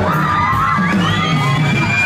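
Live reggae band music with a large crowd cheering, whooping and singing along.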